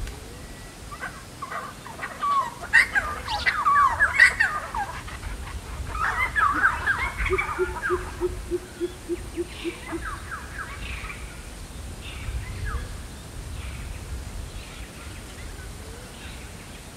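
Australian bush birds calling: bursts of rapid, overlapping calls, loudest in the first half. Around the middle comes a run of about ten low, evenly spaced hooting notes typical of a pheasant coucal.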